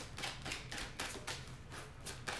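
A deck of tarot cards being shuffled overhand: a steady run of short card slaps, about four a second.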